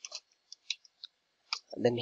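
A few soft, irregular clicks, then a man's voice starts near the end.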